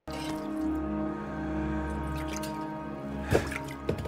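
Sustained low orchestral score from the episode's soundtrack, with a few short drip-like plinks in the last couple of seconds.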